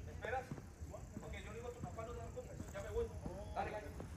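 Indistinct voices talking at a distance, too far off to make out, over a steady low rumble, with a few light clicks.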